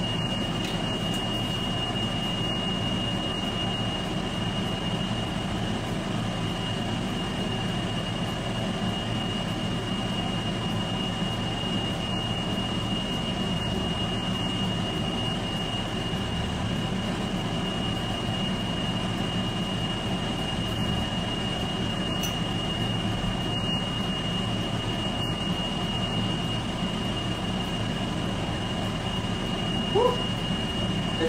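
Kitchen range hood extractor fan running: a steady low hum with a thin, constant high whine over it.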